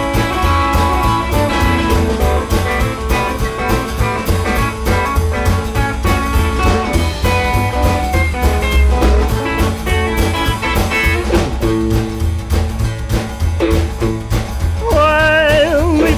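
Rockabilly band playing an instrumental break: electric guitar lead over upright bass and a steady drum beat. A singing voice comes back in near the end.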